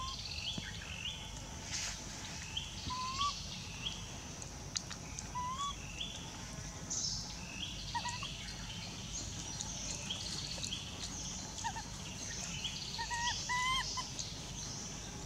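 Outdoor forest ambience with birds chirping: short, upward-hooked calls that repeat about once a second, more of them toward the end, over a steady high hiss.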